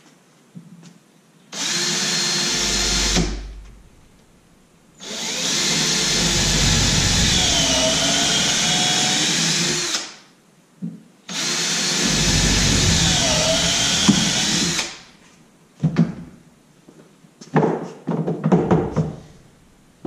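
Handheld power drill boring holes through rubber hockey pucks into a broken hockey stick: three runs, a short one about two seconds in, a long one of about five seconds, and another of about three and a half seconds, the whine dipping in pitch as the bit bites. A few knocks and clicks follow as the pieces are handled.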